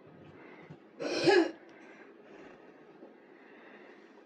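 A man clears his throat once, a short loud rasp about a second in, then only faint room tone.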